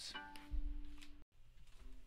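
A single violin note that starts sharply and rings steadily for about a second, then cuts off abruptly. A faint short tone follows near the end.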